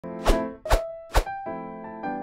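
Intro jingle music: three sharp percussive hits about half a second apart, each with a pitched note, then sustained keyboard chords.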